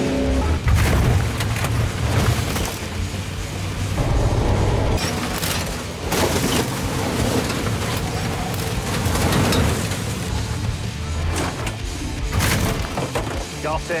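Big motorhome engines running hard in a demolition derby, with repeated heavy crashes as the vehicles ram each other, over background music.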